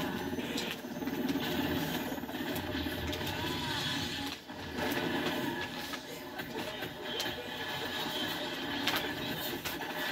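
Movie battle soundtrack played through a television: a helicopter's rotor and engine with a crash and debris, plus a few sharp impacts near the end.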